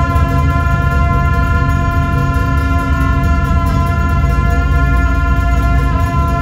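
Gyaling, Tibetan double-reed shawms, playing long held notes together over a deep, steady drone.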